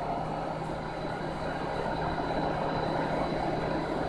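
Steady background room noise: an even hiss with a low electrical hum and a faint high whine, typical of bench test equipment and cooling fans running.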